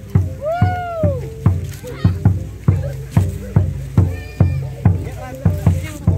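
A gong ensemble and a barrel drum play a steady beat of about three strokes a second, the gong tones ringing on between the strokes. A person gives a rising-then-falling whoop about half a second in, and a shorter call comes a little after the four-second mark.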